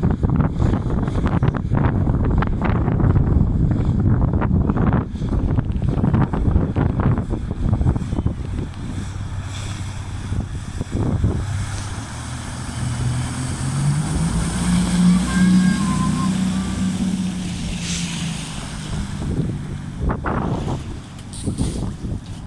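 1992 Sea Ray Ski Ray speedboat engine running at speed as the boat passes close by: its low drone grows loudest a little past the middle, then fades as it moves away. Wind buffets the microphone, heaviest in the first half.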